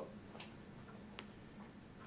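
Quiet room tone with a low steady hum and one sharp small click a little over a second in.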